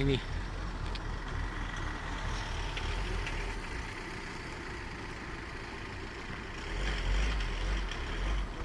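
A vehicle engine idling, a low steady rumble that grows louder near the end.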